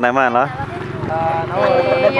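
A girl speaking, with a short pause near the middle where a low, fast, even pulsing sound is heard underneath her voice.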